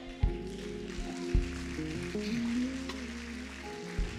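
Live church band playing quietly: a bass guitar holding long, low notes under sustained chords and a slow melody line.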